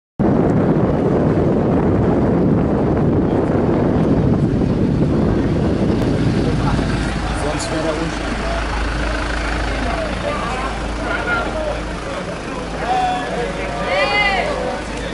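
Street noise with a steady low engine rumble, as of idling vehicles, under many voices talking over one another; the voices grow more distinct in the second half, with a louder call near the end.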